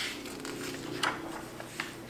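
Paper rustling and a few sharp crackles as the pages of a paperback picture book are turned.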